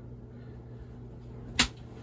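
A single short, sharp knock about one and a half seconds in, over a steady low hum.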